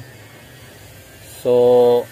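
A man's voice drawing out a long, flat "so" near the end, over faint steady background noise.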